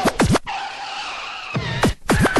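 Hardcore techno with heavy kick drums that drop sharply in pitch; about half a second in the kicks stop for roughly a second of a held, hissing, high-pitched noise, then the kicks come back in.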